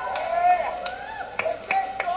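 A voice making drawn-out, wordless sounds, with two sharp clicks about a second and a half in.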